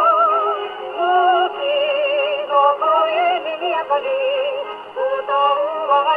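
A 1938 Japanese jazz song playing from a 78 rpm shellac record on an acoustic gramophone with a homemade soundbox. A wavering vibrato melody runs over a band accompaniment. The sound is thin, with no deep bass and no top.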